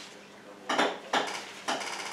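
Items being handled on an office desk: three short clattering knocks about half a second apart.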